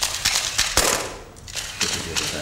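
Press photographers' still-camera shutters firing in rapid overlapping clicks: a dense volley through the first second or so, then another burst near the end.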